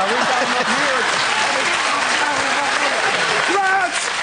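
Studio audience laughing and applauding, with a man's wordless vocal sounds over it; a held voiced tone begins near the end.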